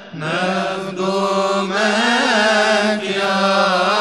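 A male voice chanting a Coptic liturgical hymn in long, ornamented phrases, the pitch wavering through each held note, with brief breaths between phrases.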